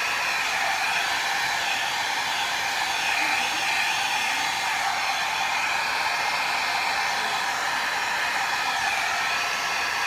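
Mini hair dryer running on its low setting: an even airy hiss with no break or change.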